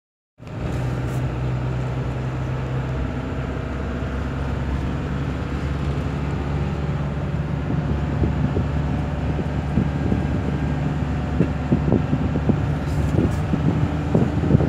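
Inside a moving road vehicle: a steady low engine hum and road noise while driving, with light knocks and rattles that become more frequent in the second half.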